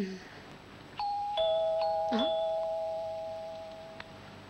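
Two-tone ding-dong doorbell chime ringing twice in quick succession about a second in, a higher note then a lower one each time, the notes fading away slowly. A short soft thump is heard right at the start.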